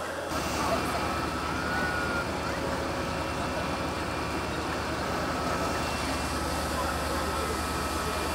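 Fire engine running steadily, a constant low drone under voices talking in the background.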